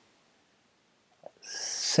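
A man's speech pauses into near silence. Near the end a drawn-out hissing 's' begins his next word, "Self".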